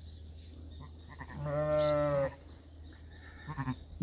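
A sheep bleating once, a single steady call of just under a second about a second and a half in.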